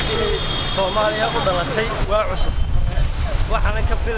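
A man talking in a street interview over a steady low rumble of road traffic, which grows louder about halfway through.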